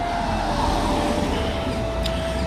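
A car passing along the street, its engine and tyre noise swelling to a peak about a second in and then easing off.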